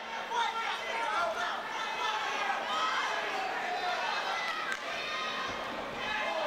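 Spectators and cornermen in a hall shouting and talking over one another during a kickboxing bout, with one short knock about four and a half seconds in.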